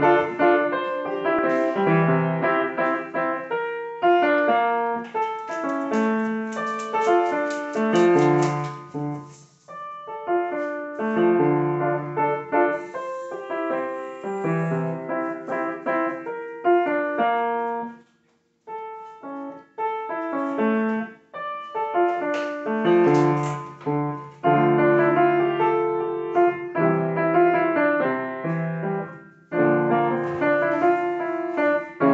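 Upright piano played solo: a piece of rapid notes and chords, with a brief pause a little past halfway before the playing resumes.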